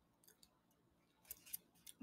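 Near silence, with a few faint short clicks in the second half.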